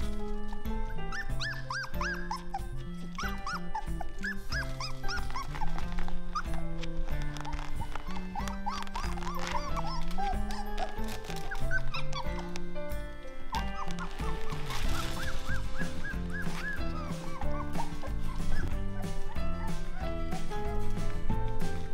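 Young Weimaraner puppies, about three weeks old, giving many short high whines that rise and fall, in clusters with a pause past the middle, over background music.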